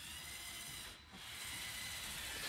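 Lego Technic 42100 Liebherr R 9800 excavator driving on a wooden floor: its plastic tracks rub and rattle with a faint whine from the electric motors, dipping briefly about a second in. It runs smoothly.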